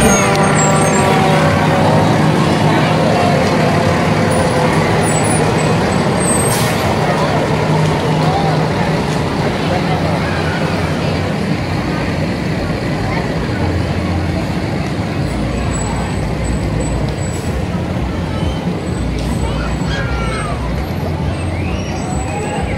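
A fire truck's diesel engine running steadily as the truck rolls slowly past close by, with voices in the background.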